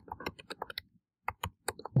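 Typing on a computer keyboard: a quick run of keystroke clicks, with a brief pause about a second in.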